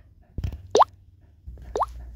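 Two short plopping blips a second apart, each rising quickly in pitch, in the manner of a cartoon 'bloop' sound effect, after a faint thump.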